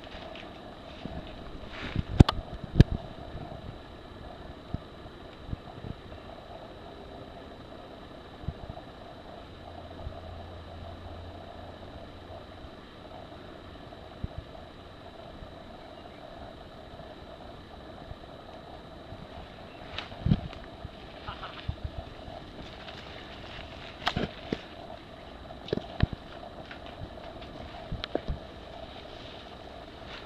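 Mountain unicycle riding over a rough trail: scattered sharp knocks and clatters, a cluster about two seconds in and more in the last third, over a steady background hum.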